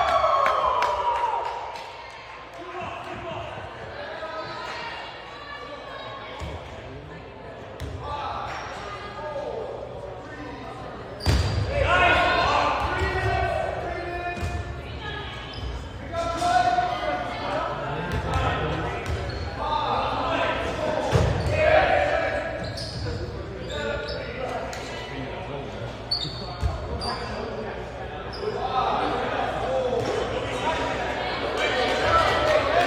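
Dodgeballs bouncing and thudding off the gym floor and walls in repeated sharp hits, with players shouting, all echoing in a large gymnasium. The loudest hit comes about eleven seconds in.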